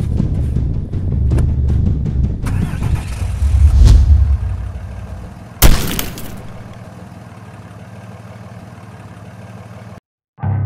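Dramatic film score and sound design: a dense low rumble swells to a peak, then a single loud crash-like hit about five and a half seconds in, after which a quieter low drone holds.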